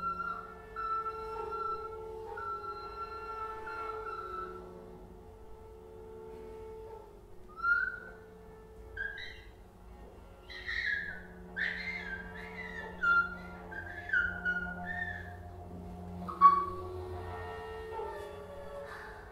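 Free vocal and electronic improvisation: steady, held tones over a low drone at first, then, from about seven seconds in, a woman's voice in short, high cries that slide up and down, with the loudest one near the end.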